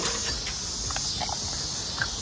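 Steady high-pitched outdoor insect chorus, with a few faint light footsteps as someone walks.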